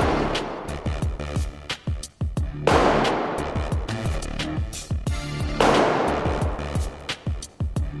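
A heavy hammer strikes a Ucrete polyurethane-cement resin floor three times, about three seconds apart, in an impact-resistance test. Each blow is a sharp bang that echoes for a couple of seconds around the large empty hall.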